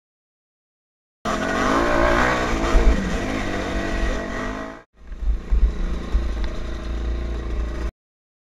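Kawasaki KX250F dirt bike's four-stroke single-cylinder engine revving up and down under riding load. The sound cuts in about a second in, drops out briefly just before five seconds in, and then stops abruptly.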